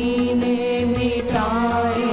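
Hindi devotional bhajan: a man's voice holding long sung notes, with a glide about a second and a half in, over instrumental accompaniment and a steady percussive beat.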